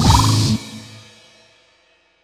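A goregrind track's drums, guitars and a wavering pitched tone stop abruptly about half a second in: the end of the song. A ringing tail fades away to silence.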